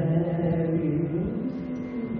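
Male Carnatic vocalist singing in raga Mohana, holding a long note that slides up to a higher pitch about a second and a half in, then slowly fades.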